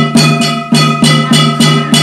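Ritual metal percussion struck in a steady beat, about three strikes a second, each strike ringing on with a sustained metallic tone.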